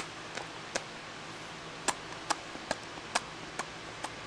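Lips making a series of quick kissing smacks, about eight short sharp pops at uneven spacing.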